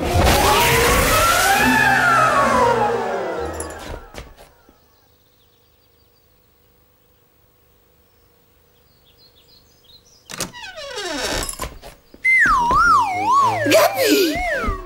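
Cartoon magic sound effect: a loud shimmering burst whose tone rises and then falls over about three seconds, as the magic word takes effect. After a quiet spell, a falling swoop and then wavering, warbling tones near the end.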